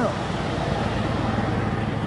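A car passing on the road: steady tyre and engine noise that slowly fades as it drives away.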